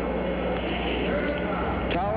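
Steady low rumble of the Saturn V rocket's five F-1 first-stage engines during liftoff, heard through an old broadcast recording.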